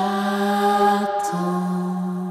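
A pop song playing, with a singer holding two long wordless notes, the second coming after a brief break just over a second in.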